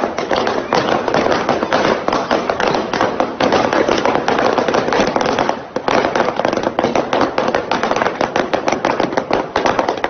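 Many rubber balloons bursting one after another under a car's tyres as it rolls over rows of them: a dense, rapid string of sharp pops, with a short lull a little over halfway through.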